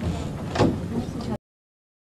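Background noise of a room with people moving about, with a sharp knock about half a second in and a lighter one about a second later. Then the sound cuts off abruptly to dead silence.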